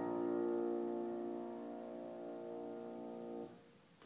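Final chord of a solo piece on a Bösendorfer concert grand piano, ringing on and slowly fading, then cut off abruptly about three and a half seconds in as it is released.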